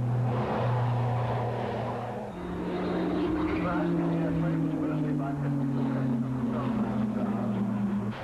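Propeller aircraft piston engines droning in flight. A steady low drone gives way, about two seconds in, to a higher engine note that slowly falls in pitch as the plane passes.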